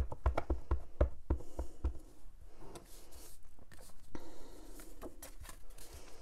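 A rubber stamp mounted on a clear acrylic block being tapped repeatedly onto an ink pad to ink it: a quick run of light taps in the first second and a half, then fainter scattered clicks and handling sounds.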